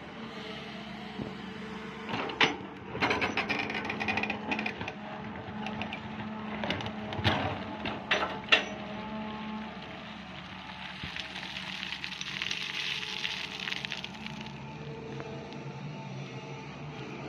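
Sany hydraulic excavator's diesel engine running steadily while its steel bucket digs into stony ground, with bursts of clattering and knocking as it scrapes and strikes rocks in the first half.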